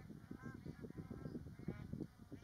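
Geese honking, many short calls overlapping in quick succession.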